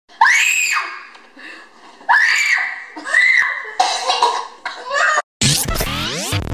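A child's voice in several short, high-pitched screams and coughs. About five and a half seconds in, a whoosh and loud intro music cut in.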